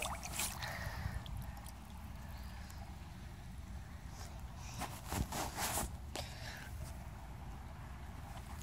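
Creek water sloshing and splashing as hands reach into it and pull at something stuck in the mud, with a few short splashes near the start and again around five seconds in. A low steady rumble sits on the microphone underneath.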